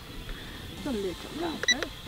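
RC drone transmitter giving a short electronic beep near the end, as the speed-rate button is pressed to switch back to rate one, under quiet talk.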